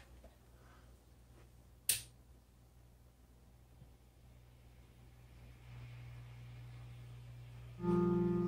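Peavey 6505 guitar amplifier rig as cables are unplugged to take the pedals out of the chain: a sharp click about two seconds in, a faint low hum coming up past the middle, then a loud buzzing hum with many overtones starting just before the end.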